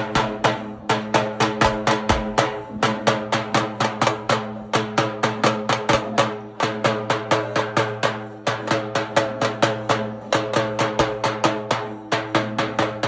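Loud, fast procession drumming, about four to five strikes a second, over a steady droning pitched accompaniment.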